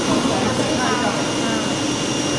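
Vacuum hold-down blower of an automatic flatbed cutting table running steadily: a constant rushing noise with a thin high whine.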